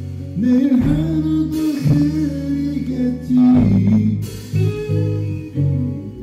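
A live rock band playing: electric guitar over bass and keyboards, with a singing voice and a few cymbal crashes.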